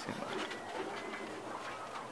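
Soft, low animal calls over a faint background hiss.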